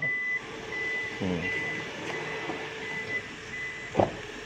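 Toyota Innova Zenix power tailgate closing on its own. Its warning buzzer beeps in a steady high tone about once every two-thirds of a second over a low steady hum, and it ends with a thud as the door shuts.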